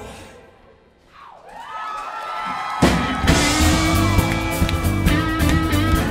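Live rock band with acoustic and electric guitars: the band drops out at the start and dies away to a short quiet break, through which a sustained note swells in, bending in pitch. About three seconds in the full band comes back in on a sharp hit and plays on loudly with long held notes.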